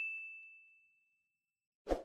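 A bright notification 'ding' sound effect, the kind paired with a subscribe-bell click. It is a single high tone that rings out and fades away over about a second and a half. Near the end comes a short, low thud-like whoosh.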